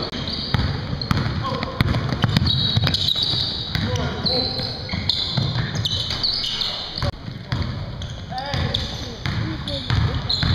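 Basketball game sounds in a gymnasium: a ball bouncing on the hardwood floor and sneakers squeaking, with players' indistinct calls and shouts echoing in the hall.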